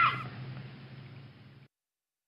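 The last word of a recorded English-lesson dialogue ends, leaving the recording's faint hiss and low hum, which fade away and then cut to dead silence about one and a half seconds in: the audio track has finished playing.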